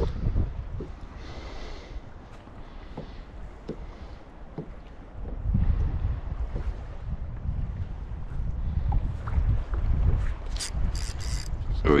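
Wind buffeting the microphone on a kayak at sea: a low rumble that grows louder about five seconds in, with scattered small knocks and, near the end, a few short sharp hissing sounds.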